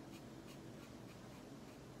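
Felt-tip marker tip rubbing on paper in short, quick colouring strokes, about three a second, faint.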